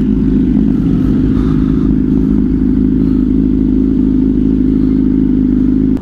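Honda CBR600RR's inline-four engine running at a steady, unchanging pitch while the bike is ridden.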